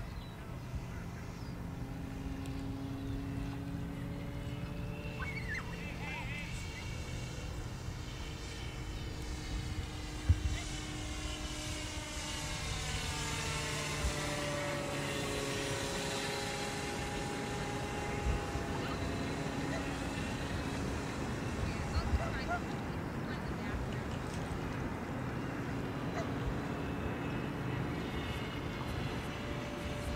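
Electric motor and propeller of a radio-controlled floatplane whining steadily in flight, the pitch shifting as it makes a low pass around the middle. A single sharp thump about a third of the way in.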